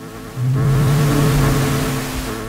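Live computer-generated electronic music: a buzzing, noise-laden synthesized texture with wavering middle tones, and a loud low tone that swells in about half a second in and holds.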